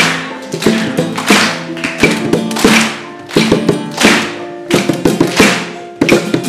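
Live instrumental backing: strummed acoustic guitar chords and keyboard, with sharp percussive taps and thunks on a steady beat.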